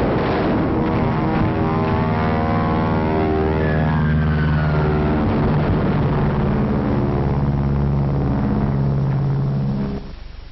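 Engines droning steadily, with a faint whistle that falls in pitch about four seconds in. The sound cuts off abruptly near the end.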